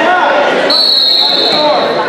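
A referee's whistle blown once, a steady high tone held for about a second, starting under a second in, over spectators' voices.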